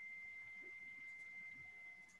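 A faint, steady high-pitched whine held on one pitch.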